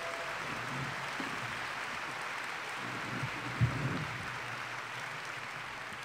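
An audience applauding steadily in a hall, with a low bump from the podium a little past the middle.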